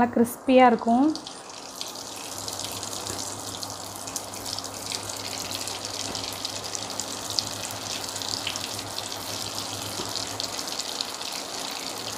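Vermicelli-coated potato cutlets deep-frying in hot oil in a kadai: a steady crackling sizzle that sets in about a second and a half in and holds.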